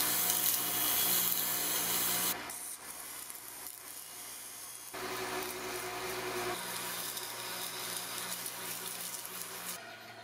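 Lathe spinning a steel pommel at high speed, its motor humming steadily, while abrasive paper and a sanding block are pressed against the turning metal with a loud hiss. The hiss eases off after about two seconds and comes back strongly about five seconds in.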